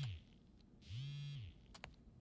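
A mobile phone buzzing with an incoming call, two short faint buzzes a little over a second apart. Each buzz rises in pitch as it starts, holds, and drops away at the end.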